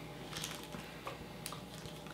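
Faint, irregular crinkles and clicks of small candy wrappers being opened by hand.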